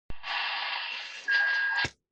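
CB base radio's speaker hissing with thin, band-limited static from an incoming station, then a steady high beep comes in over it a little past halfway. Both cut off sharply just before the end as the transmission drops out.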